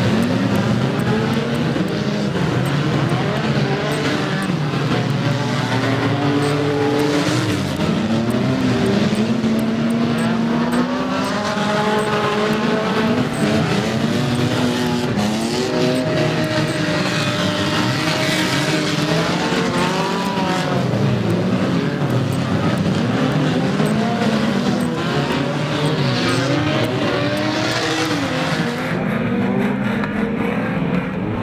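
A pack of banger racing cars racing together, several engines revving up and down at once with their pitches overlapping and gliding as they accelerate and lift through the bends.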